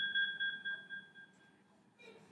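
A computer's single electronic ding fading out, dying away a little over a second in, with near silence after. It sounds as the screen recording is ended with a click on Done.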